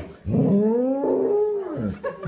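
A beagle puppy howling: one long drawn-out howl that rises at the start and falls away near the end.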